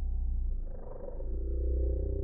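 A loud, low, steady rumble with a fast, even pulse, swelling briefly in its upper part about a second in.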